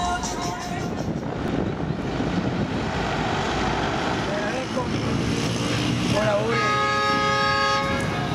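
Street traffic noise from vehicles passing on a town road. Near the end a voice calls out "hola", followed by a long, steady pitched tone lasting about a second and a half.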